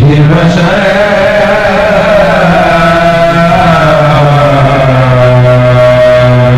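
Male voices chanting an Islamic dhikr in long, drawn-out notes: a steady low held note under a slowly wavering higher melodic line.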